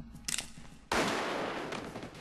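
Gunshots on an action-film soundtrack: a few quick cracks, then a sudden louder blast about a second in that hangs on for about a second.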